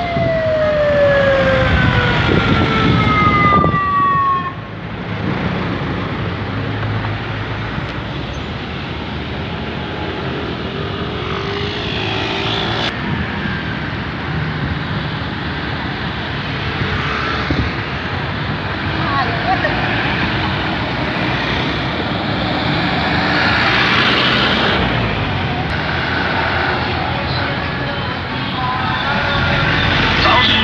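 A siren sweeps steadily down in pitch and dies away over the first four seconds. Then come the engines of trucks and scooters of a passing procession moving slowly past, with a steady traffic noise.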